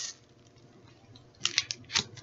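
Things being handled while searching through purchases: near silence, then, about one and a half seconds in, a short run of sharp crinkling clicks like plastic packaging or a bag being moved.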